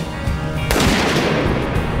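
A single rifle shot from a police marksman's rifle, a sharp crack about two-thirds of a second in that rings off in a long echo, over background music.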